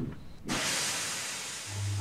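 Steam locomotive letting off steam: a hiss that starts suddenly about half a second in and slowly fades. A low steady hum comes in near the end.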